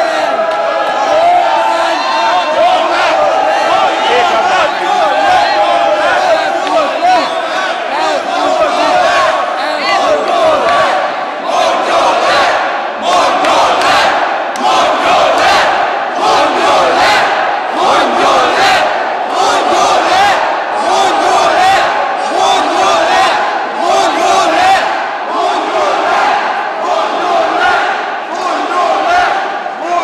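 A large crowd shouting together in a big echoing hall, many voices at once. From about twelve seconds in, the shouting falls into a regular beat about once a second.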